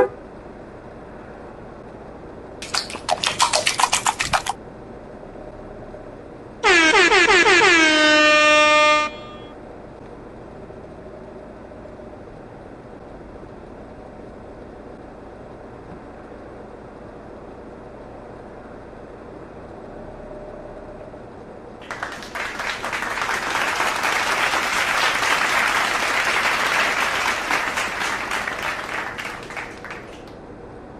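Vehicle horn sounding a quick burst of short toots, then, a few seconds later, one long blast of about two seconds whose pitch sags at the very end. Later a loud rushing hiss swells and fades away over about seven seconds.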